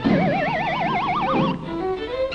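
Cartoon soundtrack: a single tone with a fast, even wobble climbs in pitch for about a second and a half over the orchestral score, then stops.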